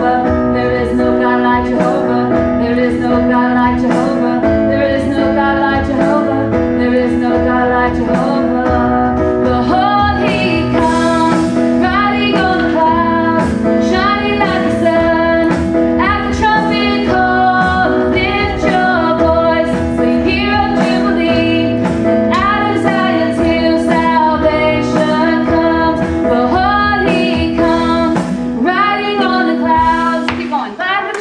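Live worship band: a woman sings the lead melody over keyboard, guitar and drums, with a steady beat.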